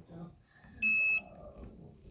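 A single short electronic beep from a self-balancing hoverboard: one steady high tone, under half a second long, about a second in.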